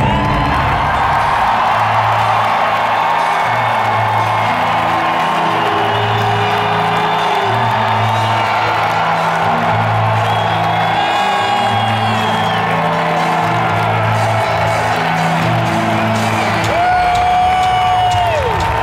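Large arena crowd cheering, with whoops and whistles rising above it, over music with a low repeating bass beat played through the arena sound system.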